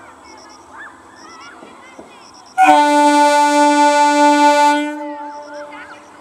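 Electric horn of an arriving EMU local train: one long, loud blast of about two seconds, sounded a little over two seconds in, then fading away over about another second.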